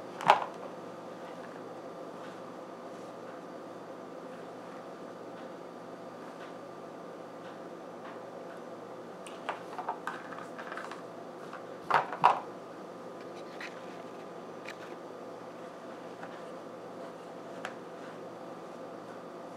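A few short knocks and clicks from handling a multimeter and its test probes, the loudest pair about twelve seconds in and another just after the start, over a steady faint hum.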